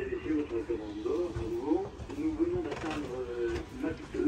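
A person talking, with the words not made out; only speech is heard.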